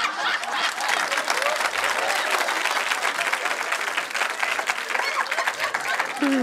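Studio audience applauding: a dense, steady patter of many hands clapping, with some laughter mixed in.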